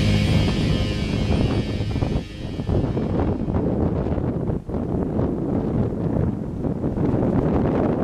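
Rock music fading out over the first few seconds, giving way to gusty wind buffeting the microphone during a thunderstorm.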